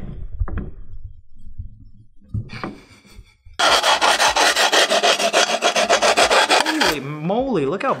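Grip tape on a kick scooter deck being scraped rapidly back and forth along the deck's edge with a hand tool, scoring the gritty tape so the overhang can be trimmed. The run of quick raspy strokes starts about three and a half seconds in, after some light handling, and stops about a second before the end.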